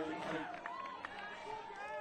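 Overlapping voices from a crowd: scattered calls and chatter, with no single clear speaker.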